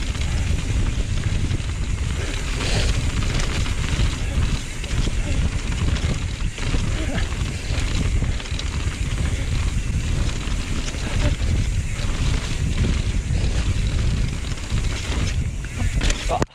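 Wind buffeting an action-camera microphone on a mountain bike descending fast, with the tyres rolling over a packed dirt trail and scattered small knocks and rattles from the bike.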